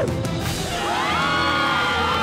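A group of children screaming together, their cries rising about half a second in and then held, over cartoon background music.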